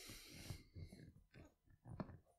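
Near silence: room tone with a faint breath near the start and small soft movement noises from a person sitting still.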